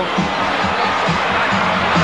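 Arena crowd cheering: a steady, loud roar of many voices with no single voice standing out.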